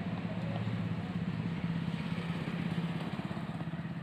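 A small engine idling steadily, a fast, even low pulsing.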